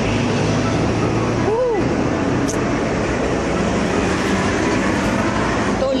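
Loud, steady road traffic close by on a busy city street: buses and trucks passing, with a steady low engine drone under the noise of engines and tyres.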